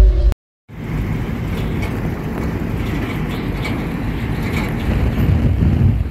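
Steady rumble and wind noise of a moving vehicle, heard from on board, starting after a brief dropout.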